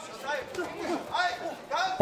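Voices speaking, with chatter behind them.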